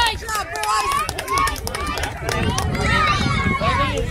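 High-pitched children's and spectators' voices calling and chattering without clear words, with a few sharp claps in the first second and a low rumble in the second half.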